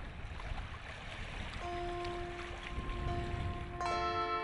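Water washing against a rocky shore, heard as a low, even rumbling rush. Soft instrumental music fades in about one and a half seconds in with a single held note, and a fuller sustained chord joins near the end.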